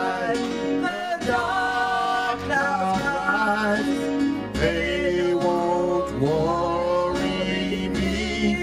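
A worship song sung live, with long held vocal notes over instrumental accompaniment.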